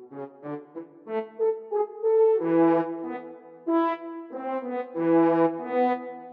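Sampled French horn section from Miroslav Philharmonik 2's portato horns preset, playing back a MIDI pattern. It starts with a quick run of short notes climbing in pitch, then moves to longer held chords from about two seconds in, which die away near the end.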